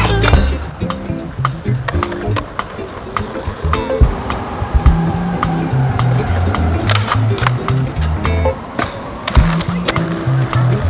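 Skateboard wheels rolling on stone paving, with a string of sharp clacks from the board, over background music with a stepping bass line.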